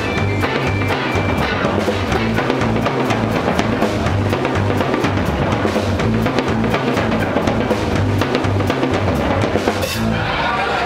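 Live band music driven by a full drum kit, with kick drum, snare and cymbal hits over a pulsing bass line.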